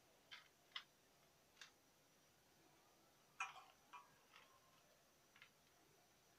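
Faint, irregular clicks and short scrapes of a metal spoon against a baking tray while spreading crushed, coloured peanuts: about seven light touches, the strongest about three and a half seconds in.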